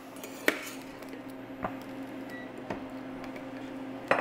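A slotted metal spoon clicking a few times against a saucepan as blanched fava beans are scooped out of the hot water, the sharpest click about half a second in, over a steady low hum.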